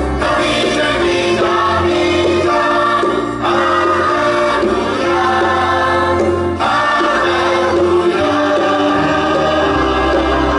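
Children's choir singing in unison over an instrumental accompaniment with a steady bass, in long held phrases with brief breaks between them.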